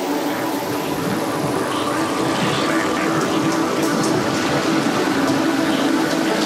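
Beatless intro of a psytrance track: a dense hiss-like synth wash over held drone tones, slowly swelling in level.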